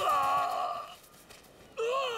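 A man crying out in pain: a drawn-out wailing cry about a second long, then a second cry starting near the end that falls in pitch.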